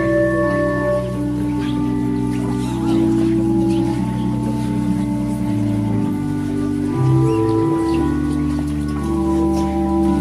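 Organ playing slow, held chords that change every second or two.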